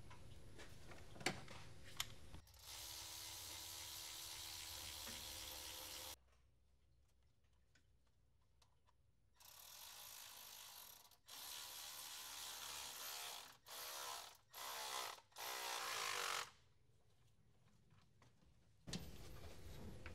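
Hand ratchet clicking in several short bursts with quiet gaps between them, driving the bolts of a new thermostat housing on a Detroit DD13 engine.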